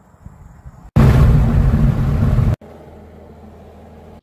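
Light aircraft engine and propeller noise heard inside the cabin, in short cut-together clips: a loud rushing stretch from about one second in to about two and a half seconds, then a quieter steady low drone.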